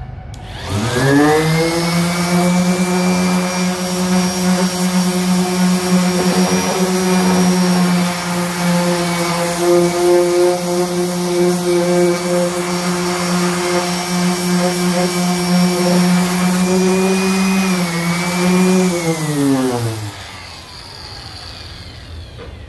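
DeWalt random orbital sander spinning up with a rising whine, then running steadily while sanding a black walnut board inlaid with white epoxy. It winds down near the end.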